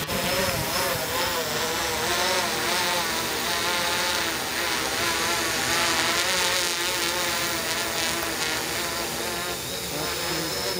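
An octocopter's eight electric motors and propellers running in flight overhead: a steady buzzing whir made of several pitches that waver up and down as the motors change speed.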